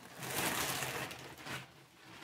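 Soft rustling of packaging being handled for about a second and a half, fading out near the end.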